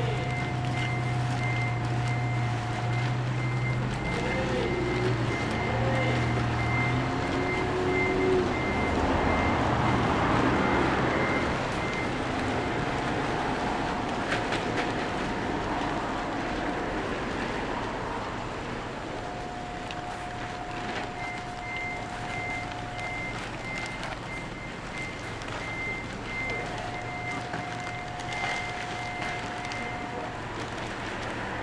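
A vehicle's reversing alarm beeping rapidly and evenly, stopping for several seconds mid-way and then starting again. A lower steady tone comes and goes in stretches of a few seconds, and an engine hums low in the first several seconds.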